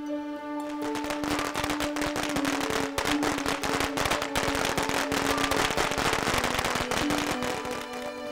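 A string of firecrackers going off in a rapid, dense crackle, starting about a second in and dying down near the end, with background music playing underneath.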